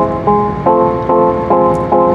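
Background music: sustained chords restruck in a steady, even rhythm, a little over two a second.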